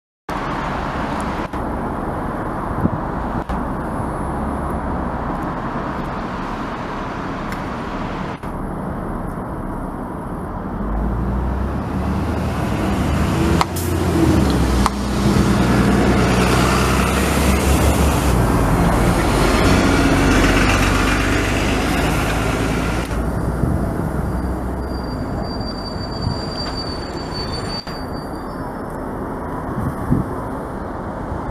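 Diesel bus engines running in a bus station, with a louder stretch in the middle as an orange single-decker bus drives up close, its engine rumbling and rising in pitch as it pulls across and then falling away.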